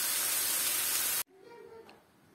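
Meat sizzling in a frying pan, a steady hiss that cuts off abruptly just over a second in, leaving only faint room sound.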